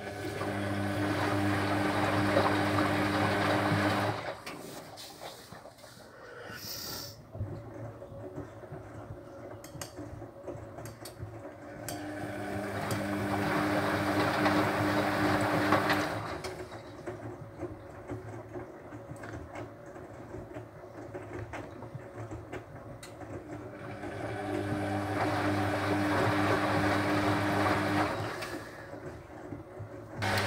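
Hotpoint WF250 front-loading washing machine tumbling its wet load in the rinse, with the motor humming and water sloshing in the drum. The drum turns in bursts of about four seconds, three times, with pauses of about eight seconds between them.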